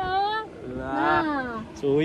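A man's voice: a short spoken word, then a drawn-out vocal sound that rises and then falls in pitch for about a second, then another short word near the end.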